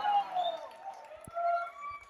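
Faint voices in a concert hall: a man's voice fading away in the room's echo, then a few short, indistinct calls.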